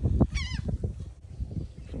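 A brief, wavering, high-pitched animal call about a third of a second in, over a low steady rumble.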